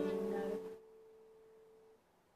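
Acoustic guitar and voice ending a phrase. The chord dies away within the first second, leaving one faint steady note ringing on.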